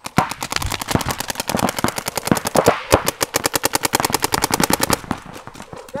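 Paintball markers firing in rapid strings of sharp pops, many shots a second. About five seconds in, the fire thins to scattered shots.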